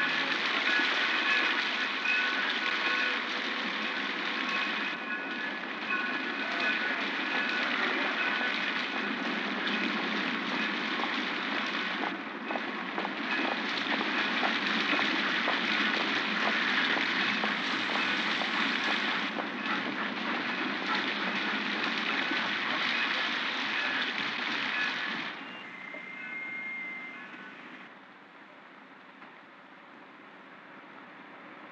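Train running: a dense, steady clattering rumble with faint high squealing tones, as on a film soundtrack. It drops away sharply about 25 seconds in, leaving a quieter hiss.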